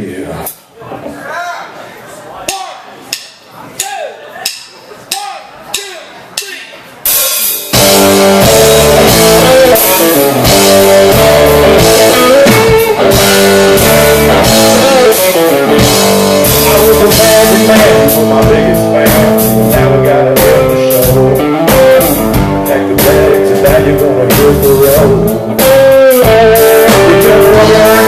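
Live rock band starting a song: a quieter opening with a steady beat of short hits about every two-thirds of a second, then electric guitars, bass guitar and drum kit come in together loudly about eight seconds in and play on.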